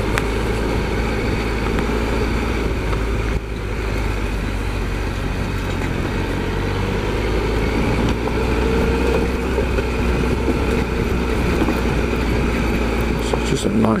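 Triumph Explorer XCa's three-cylinder engine running steadily at low speed as the motorcycle rides along a rough dirt trail, the revs and loudness rising a little about eight seconds in.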